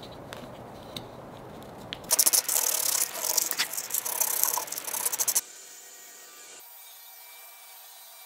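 Sandpaper rubbed by hand over the edge of a hole in a softwood 2x4 block to soften it: rapid back-and-forth strokes starting about two seconds in, lasting about three seconds, then stopping abruptly.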